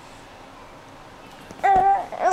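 A baby's voice: after a quiet stretch, one short, loud, steady-pitched call starts about a second and a half in.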